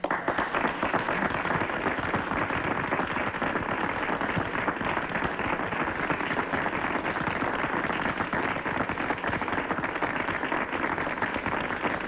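Audience applauding, a dense and steady clapping.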